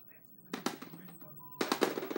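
Rustling and crinkling from a cat rummaging with its head inside a leather handbag. A few sharp crackles come about half a second in, then a denser, louder burst of crackling near the end.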